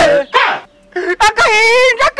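Men's voices singing unaccompanied in short phrases with sliding pitch, breaking off briefly about half a second in.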